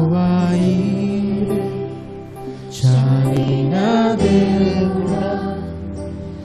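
Live worship band: several vocalists singing a slow praise song together in long held notes, over keyboard and electric guitar. There is a brief lull between sung phrases about two and a half seconds in.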